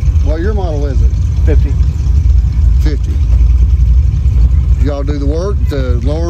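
A car engine idling with a low, steady rumble, with voices talking over it near the start and near the end.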